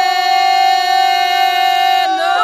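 Unaccompanied ganga singing, the traditional Herzegovinian style of group song: the voices hold one long, steady note together.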